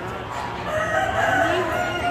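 A rooster crowing: one long drawn-out call that starts just under a second in and carries on past the end.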